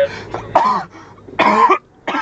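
A man coughing twice, loud, with his voice in the coughs, over the faint low hum of a moving car's cabin.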